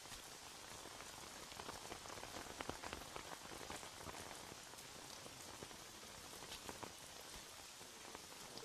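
Steady rain falling, quiet, with many small drop ticks over an even hiss.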